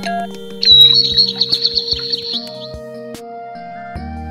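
Small speaker of a LATEC digital alarm clock playing its alarm tones: held electronic notes, then a birdsong alarm tone, a rising chirp followed by a fast warbling trill of about two seconds, starting just under a second in.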